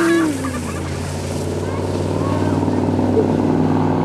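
A steady, low engine-like hum that grows slowly louder, just after a drawn-out falling vocal glide, like a yell, dies away about a third of a second in.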